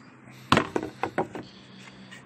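Wooden pieces of a table-saw jig knocking and clicking as they are handled: one sharp knock about half a second in, then four lighter taps close together.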